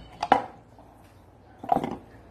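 Empty tin cans being handled, knocking against each other or a hard surface: a quick double knock near the start and a short clatter near the end.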